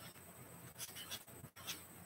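Faint scratching of a pen writing on paper, a few short strokes.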